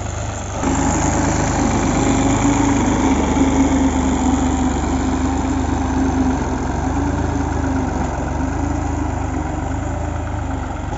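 New Holland 3630 TX Super tractor's three-cylinder diesel engine running steadily under load while dragging a back blade full of soil. It gets louder about half a second in and stays steady from then on.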